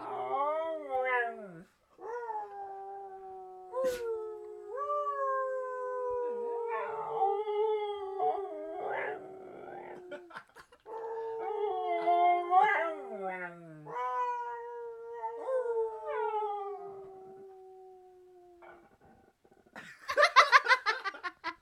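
Husky-type dog howling: a series of long howls, each sliding slowly down in pitch, with short breaks between them. The last howl trails off quietly near the end.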